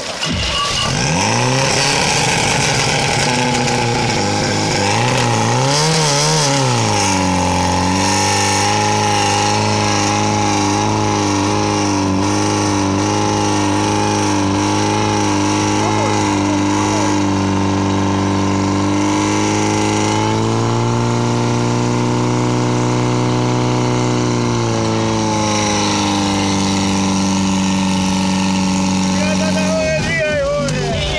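Portable fire pump engine starting and revving up and down, then running steadily at high revs as it pumps water out through the hoses. Its pitch rises a little again later before dropping back, and it stops right at the end.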